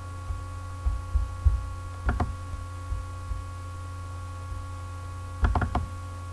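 Steady electrical mains hum from the narration recording, with scattered low bumps and a few short sharp clicks, a quick cluster of them near the end.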